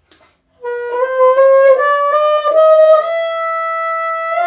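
Bassoon fitted with a straight-bend Wolf Grundmann bocal, climbing stepwise through the extreme high register. It holds its top note, falling short of high F, which will not come out.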